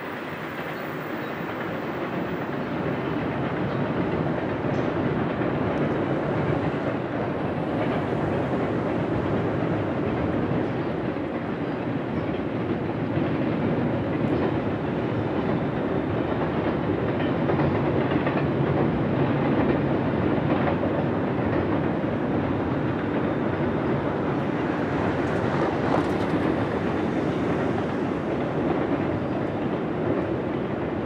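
Double-stack container cars of a long freight train rolling over a steel trestle bridge: a steady rolling rumble and wheel noise that builds slightly over the first few seconds, then holds.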